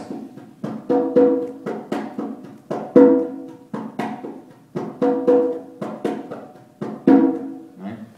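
Pair of conga drums played by hand in a son tumbao pattern: sharp slaps and muted strokes with ringing open tones, two open tones the first time and only one on the second repetition. The pattern cycles about every two seconds.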